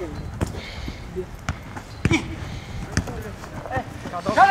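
A football being kicked on artificial turf: a few sharp thuds, about a second apart, among players' short shouts.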